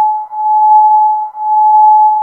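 Soundgin synthesizer chip playing a steady sine tone whose volume swells and fades about once a second. This is amplitude modulation: a second voice's triangle wave moves the first voice's volume up and down, which makes the tone pulse.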